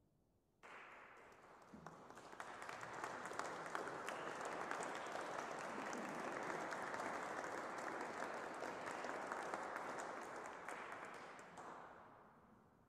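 Audience applauding: the clapping breaks out suddenly just under a second in, holds steady, and dies away near the end.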